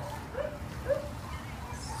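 A large dog panting with short voiced huffs, about two a second, stronger in the first second.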